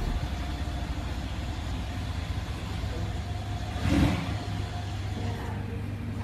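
Mercedes-Benz SUV's engine idling with a steady low rumble, with one brief rev about four seconds in.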